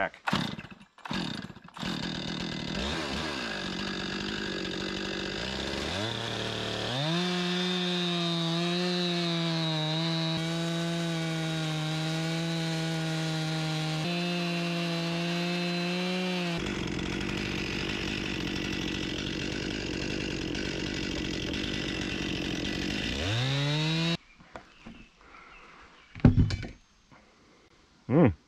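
Stihl MS 261 two-stroke chainsaw on an Alaskan small log mill, ripping a cedar log. The saw rises in pitch a couple of seconds in and then runs steady at full throttle. Near the end it rises in pitch once more and cuts off sharply, followed by a few knocks.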